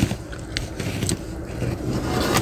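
Close-up eating sounds: a plastic spoon scraping and clicking against a plastic food container, with a few sharp clicks about half a second and a second in, mixed with chewing.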